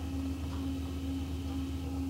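Electric potter's wheel motor running with a steady, even hum while the wheel spins.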